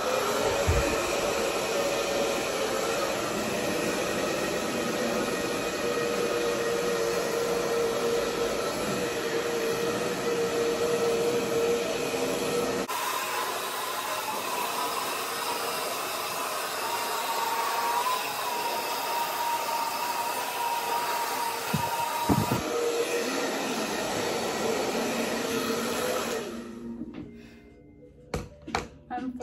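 Handheld hair dryer running steadily while blowing out hair, a constant rush of air with a whine in it. The whine jumps higher about 13 seconds in and drops back about 23 seconds in. The dryer cuts off just before the end.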